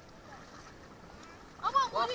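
Faint background noise, then a child's high-pitched voice calling out loudly near the end.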